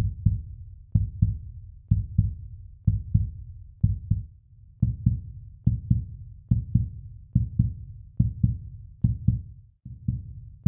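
Heartbeat sound effect: paired low thumps, lub-dub, about one beat a second, quickening slightly in the second half.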